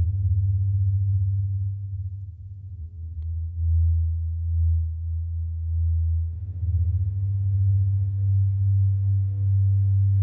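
Distorted synth sub-bass holding long, deep notes that follow the lowest notes of the chord progression, under faint held ambient synth pads. About six seconds in, a new bass note comes in with more grit, the distortion meant to make it rattle as if breaking the speakers.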